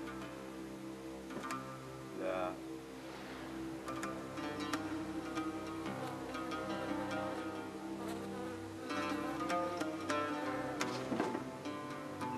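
Music: plucked notes on a string instrument over a steady buzzing drone, with the plucks coming thicker from about four seconds in.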